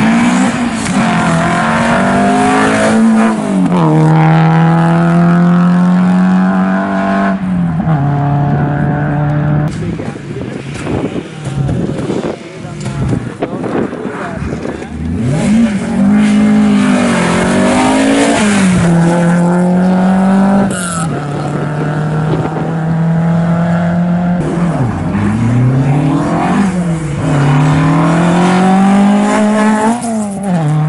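Historic rally car engines revving hard at a stage start line: the revs climb, hold steady for several seconds, then drop away. This happens twice, with a quieter spell in between, and the revs climb again near the end.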